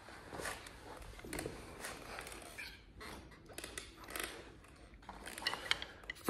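Faint rustling and small irregular clicks and knocks of a person moving about at a drum kit and handling drumsticks and felt mallets.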